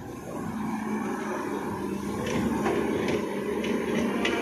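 Volvo crawler excavator's diesel engine running steadily while it works, with a few sharp knocks in the second half.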